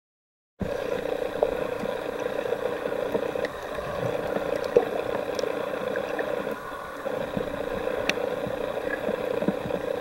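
Underwater ambience picked up by a camera in a waterproof housing: a steady, muffled hum with scattered faint clicks and crackles. It starts about half a second in.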